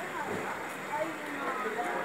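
Indistinct voices of people talking at a distance, over steady outdoor background noise.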